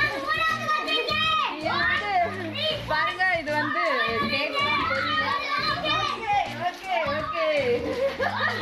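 Children's excited voices, shrieks and laughter as they play in an inflatable pool, with some splashing of water.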